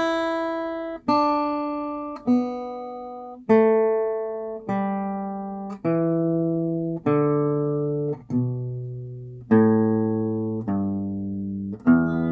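Acoustic guitar playing the E minor pentatonic scale descending, one picked note at a time, each note ringing out before the next, about one a second, stepping down in pitch toward the open low E string.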